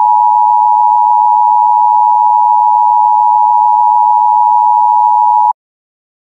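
A single steady electronic test tone, the kind of stand-by tone a broadcast plays, with faint hiss behind it. It cuts off suddenly near the end.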